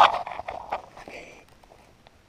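A loud shout cut short at the very start, then scattered knocks and rustles from a handheld camera being grabbed and jostled against costume fabric, fading away toward the end.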